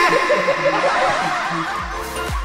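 Laughing and chuckling voices over background music that comes in at the start. A beat with deep bass kicks in near the end.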